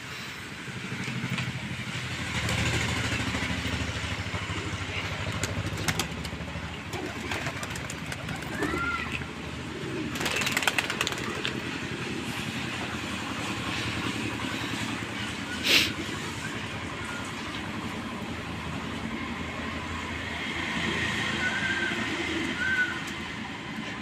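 A flock of domestic pigeons feeding on grain, cooing, with scattered sharp clicks and a few short chirps. A low motor hum runs under the first few seconds.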